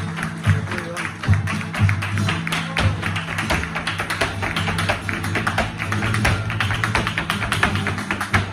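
Flamenco dance footwork, rapid heel and toe strikes on the stage, over a flamenco guitar playing tarantos, with handclaps (palmas) among the strikes.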